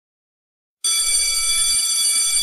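An electric doorbell ringing steadily for about two seconds, starting about a second in and cutting off sharply, announcing a visitor at the door.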